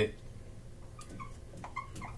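Dry-erase marker writing on a whiteboard: a few faint short squeaks and a light tick as the tip moves, about a second in and again near the end.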